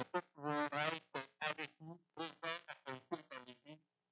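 A man's voice at the pulpit microphone, in short choppy bursts with dead-silent gaps between them.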